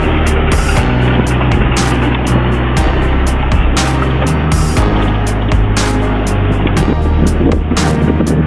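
Background music with a steady beat, laid over the engine and road noise of a safari van driving along.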